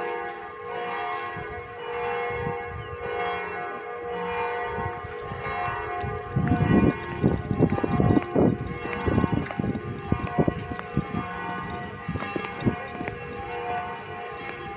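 Church bells ringing, several overlapping tones sustaining throughout. From about halfway through, a run of loud, irregular low knocks and bumps sounds over the ringing.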